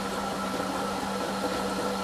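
Sous vide immersion circulator running: a steady hum with a constant low tone and a fainter higher whine.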